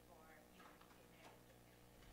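Near silence: room tone with a steady low hum and faint, distant speech.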